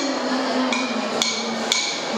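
A girl's voice holds one long sung note that ends near the end, while two wooden hand sticks are struck together in a steady beat, three sharp clicks about half a second apart.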